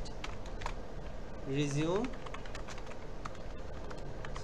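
Typing on a computer keyboard: irregular keystroke clicks. A voice gives a short rising hum about halfway through.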